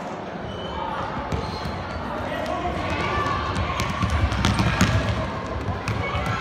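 Reverberant sports hall during a youth indoor football game: children's and spectators' voices calling out, with sharp thuds of the ball being kicked and hitting the hall floor. The din grows louder about four seconds in, as play runs toward goal.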